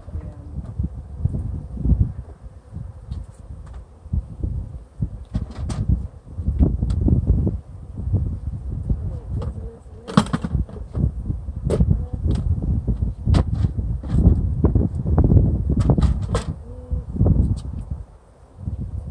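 Wind rumbling and gusting on the microphone, with a scatter of sharp knocks and clicks from beekeeping gear being handled, the loudest about halfway through and a quick cluster near the end.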